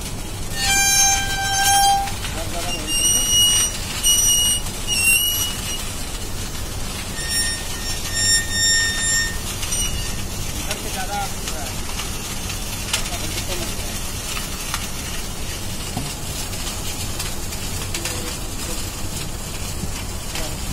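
A run of short, high, steady horn toots: one long toot about a second in, three quick toots a few seconds later, and three more at another pitch near the middle. Steady outdoor background noise runs underneath.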